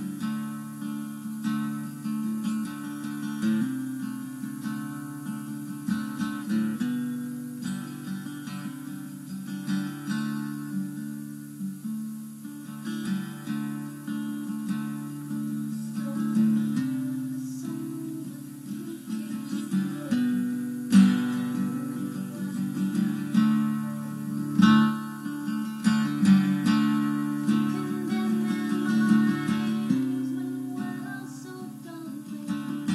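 Acoustic guitar strummed steadily through an improvised song, on an old, thin-sounding live recording.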